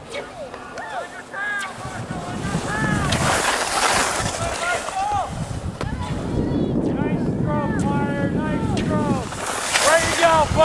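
Spectators shouting and calling out encouragement to passing cross-country skiers, in short raised-voice calls through most of the stretch, with a burst of hiss about three seconds in.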